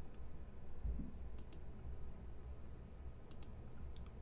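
Computer mouse clicking: two pairs of quick, faint clicks about two seconds apart, over a low room hum.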